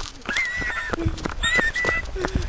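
Footsteps through dry grass, a string of irregular soft knocks, with two high, steady whistle-like tones of about half a second each, one early and one near the end.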